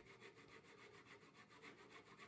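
A hand saw cutting through a hardwood guitar-neck blank, very faint, in an even repeating pattern.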